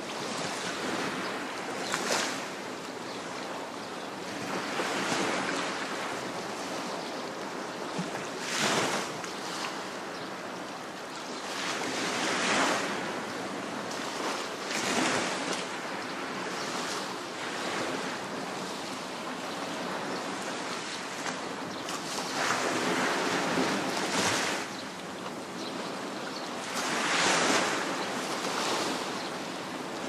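Sea waves breaking and washing up on a shore, swelling every few seconds over a steady wash of surf.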